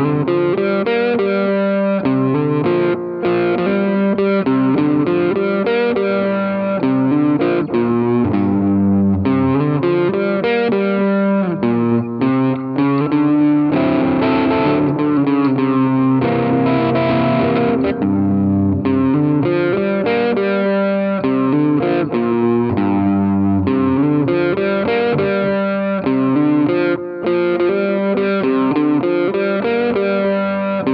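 Distorted electric guitar, a Gibson Les Paul Tribute, playing a continuous run of licks and chords, with longer held notes about halfway through.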